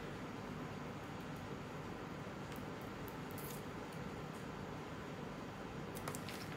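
Scissors cutting a printed floral sheet: a few faint, soft snips over steady room hiss.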